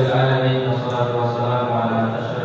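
A man's voice chanting in long, held, melodic notes, in the style of the Arabic opening praise recited at the start of an Islamic lecture.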